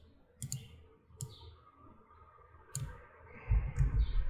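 Computer mouse clicking: about four separate clicks spread over a few seconds, a right-click and menu selections while working in a code editor.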